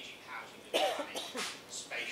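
A man speaking into a desk microphone, with a short, sudden cough about three-quarters of a second in that is the loudest sound.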